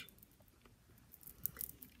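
Faint, scattered light clicks of glass beads on a strand of beaded trim knocking against each other as it is handled, mostly in the second half.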